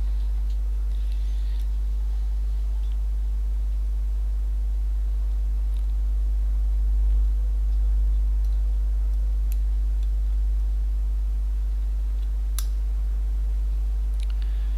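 A steady low hum, with a few faint sharp clicks scattered through it.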